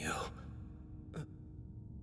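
A man's voice ends a spoken question, then about a second later gives one short sigh that falls in pitch. A faint steady hum runs underneath.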